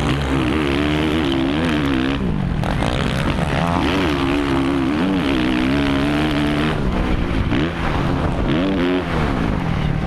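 A Suzuki RM-Z450 motocross bike's four-stroke single-cylinder engine revving hard under racing throttle. Its pitch climbs and falls over and over as the throttle is worked through the track's turns and straights, with sharp drops near 2 s, 7 s and 9 s.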